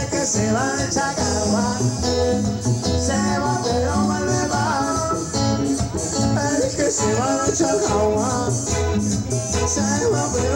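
Live band playing Latin dance music, with a steady bass beat under a bending melodic lead line.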